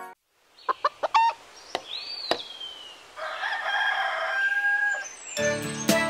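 A chicken sound effect: a few short clucks about a second in, then a long rooster crow from about three to five seconds. Cheerful children's music starts near the end.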